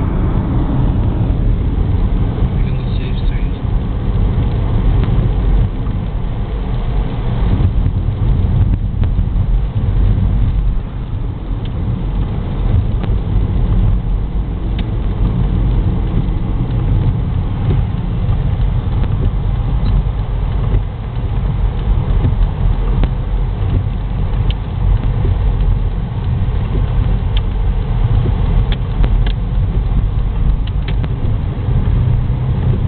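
Car's cabin noise while driving: a steady low rumble of engine and tyres on a wet road, heard from inside the car, with a few faint clicks near the end.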